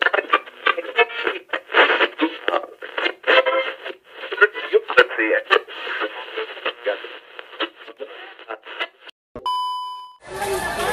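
Intro sound effect of tinny, radio-like broadcast voices cut into quick, chopped-up snippets. About nine and a half seconds in they stop, and a steady test-tone beep sounds with the colour bars.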